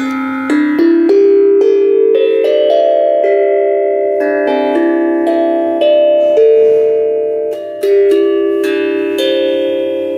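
Steel tongue drum (glucophone) made from a gas cylinder, played with a mallet: a melody of struck notes, about two a second, each ringing on long and overlapping the next.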